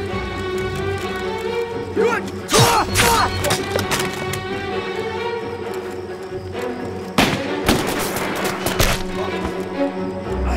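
Tense orchestral film score with sustained strings, cut through by two clusters of gunshots and thuds, one about two seconds in and a longer one about seven seconds in.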